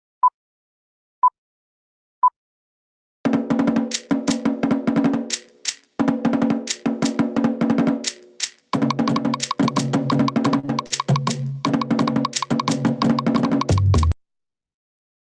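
Three short electronic beeps, a second apart, count in fast Tahitian drumming about three seconds in: rapid wooden slit-drum strokes over a deeper drum, with two brief breaks, played back as a sound check. The drumming cuts off sharply at the end.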